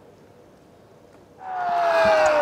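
Faint, steady background noise, then about one and a half seconds in several men burst into loud shouting together, a drawn-out celebratory "yes!" after a goal.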